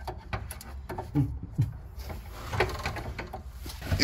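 A metal wrench clicking and scraping on a rust-seized brake line fitting in irregular small knocks, as the fitting refuses to come loose.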